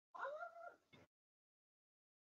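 A single short, high-pitched vocal call about a second long, rising slightly and then falling in pitch, ending in a brief click.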